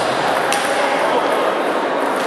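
A single sharp click of a table tennis ball about half a second in, heard over the steady noise of a large hall.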